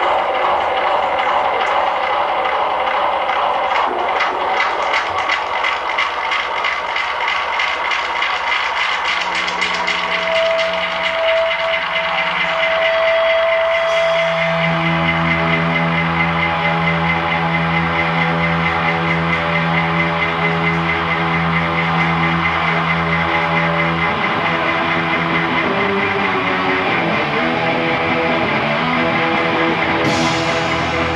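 A live rock band's amplified guitars playing a loud, dense noise passage that settles into held tones about ten seconds in, then into a sustained low droning chord from about fifteen seconds on.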